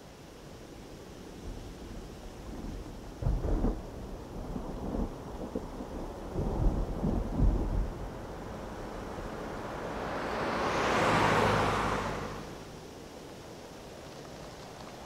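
A low, uneven rumble rises and falls for several seconds. Then a car passes close by on wet asphalt: its tyre and road noise swells, peaks about eleven seconds in, and fades away.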